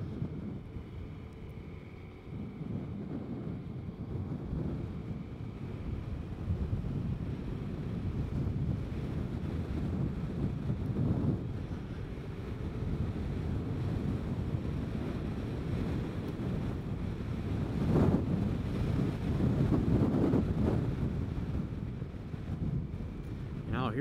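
Wind rushing and buffeting over a helmet-mounted microphone while riding a scooter at road speed. It swells louder briefly about ten seconds in and again for a few seconds past the middle.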